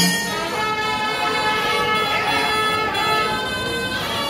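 Kerala temple wind instruments, most like kombu brass horns, blowing several long, steady notes that overlap at different pitches.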